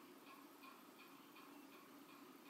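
Near silence with faint, evenly spaced ticks, about three a second, from a smartphone being tapped as a timer is set on it.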